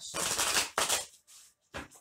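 A deck of tarot cards being shuffled by hand: a crackling burst of cards riffling against each other for about a second, then a single short snap of the cards near the end.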